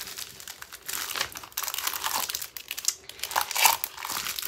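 Clear plastic packaging crinkling as hands handle and smooth a bagged pack of sticker sheets, a run of irregular crackles.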